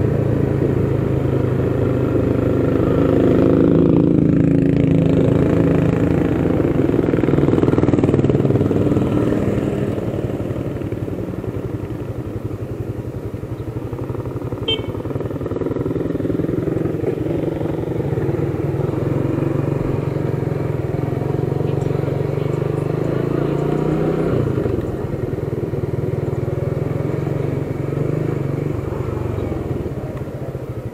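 Motorcycle engine running while under way, its note rising and falling with speed, louder in the first few seconds and easing off after about ten seconds.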